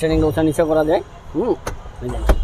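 A man talking, with a brief low rumble just after the start and two short sharp clicks near the end.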